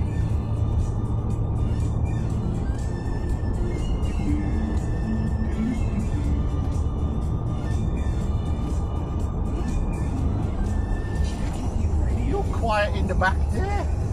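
Steady low road and engine rumble inside a moving SEAT car's cabin, with music from the car radio playing faintly over it. A voice comes in near the end.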